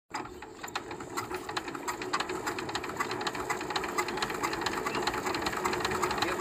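Power tiller's single-cylinder diesel engine being hand-cranked, turning over without yet firing: a rapid, even mechanical clicking that grows steadily louder.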